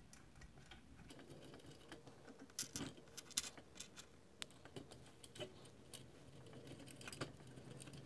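Faint, irregular small metallic clicks and taps from two small brass screws being turned in by hand to fix the thin brass cover plate over a Mamod FE1 live-steam fire engine's boiler water-level glass.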